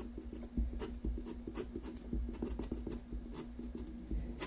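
Pen scratching on paper in many short, irregular strokes while drawing lines, boxes and arrows, over a faint steady hum.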